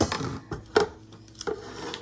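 Silicone spatula stirring sliced raw mushrooms and onions in a pot, a handful of short, irregular scraping strokes.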